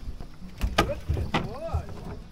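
Several sharp, irregular knocks and thuds on a boat as a fish is brought aboard in a landing net, with a brief voiced exclamation between them.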